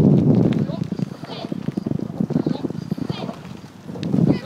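Wind rumbling on the microphone for about the first half second, then a quick, irregular run of light knocks and rattles, with faint high calls over them.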